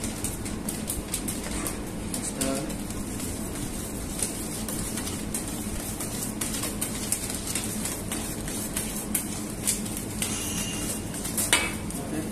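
Light, irregular clinks of a metal whisk and utensils against a stainless steel mixing bowl, over a steady low background hum.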